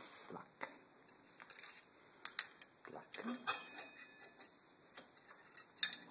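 Light metallic clicks and clinks as brake pads are handled and seated in a quad's brake caliper, the clearest a few sharp clinks about two and a half to three and a half seconds in, one ringing briefly.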